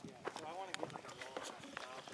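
Indistinct talk from a small group of people, several voices overlapping, with a few sharp clicks among them.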